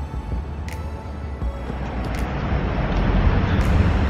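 Road traffic on a city street, a steady rumble that grows louder towards the end, with background music fading under it early on.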